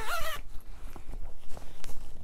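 A fabric project bag being handled and a linen cross-stitch piece pulled out of it, with scattered rustles and small clicks. A brief vocal sound with rising pitch comes at the very start.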